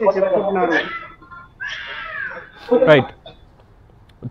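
A man speaking briefly, then two short sound effects with swooping, falling pitch, the second one louder. They play as a news segment's title graphic comes on.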